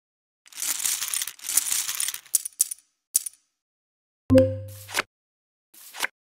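Casino chip sound effects from an online blackjack game: a run of chips clinking as the bet is stacked up, then a click. About four seconds in comes a sharp, low-pitched game tone that fades over half a second, followed by a short swish as the cards are dealt.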